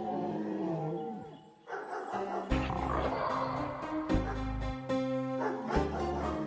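A dinosaur roar sound effect for about the first second and a half, followed by music with a deep bass and sharp drum hits.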